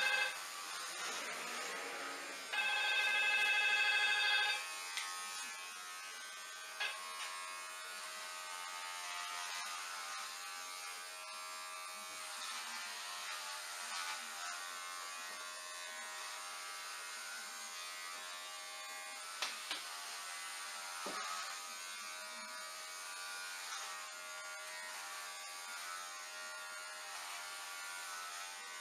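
Electric hair clippers running with a steady buzz while cutting hair. The buzz is loudest for about two seconds, starting about two and a half seconds in, then runs on more quietly with a few faint clicks.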